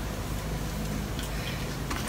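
Quiet room tone with faint handling of a handbag and a light click near the end.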